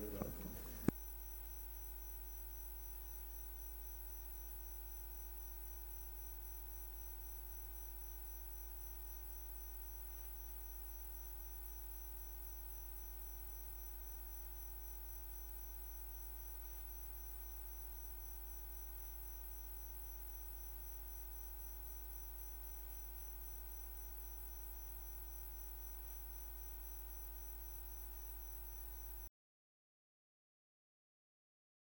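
Steady electrical mains hum with a thin high whine above it, after a single click about a second in; it cuts off abruptly near the end.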